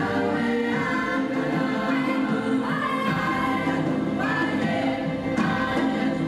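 Women's choir singing with orchestral accompaniment, long held notes shifting pitch every second or so.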